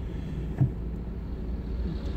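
Steady low rumble of a stationary car, heard from inside its cabin.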